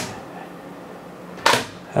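Spring steel flex plate snapping down onto the magnetic sheet on a 3D printer bed: a sharp click at the start, then a second, broader snap about a second and a half in.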